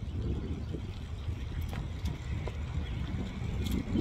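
Steady low rumble of riding by bicycle on a paved trail: wind on the handheld phone's microphone and tyres rolling on asphalt, with a few faint clicks.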